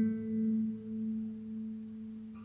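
Background music: a single strummed acoustic guitar chord ringing out and slowly fading.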